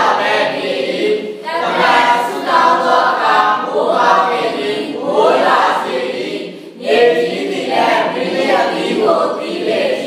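A church congregation of many voices singing together in unison, in phrases with a brief breath-pause a little before the seventh second.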